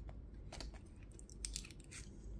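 Faint crinkling and a few small clicks of a thin plastic protective film being peeled by hand off a phone holder's plate.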